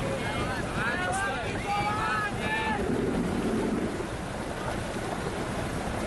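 Wind buffeting the microphone over the steady noise of open water and a small boat, with people's voices calling out roughly in the first half.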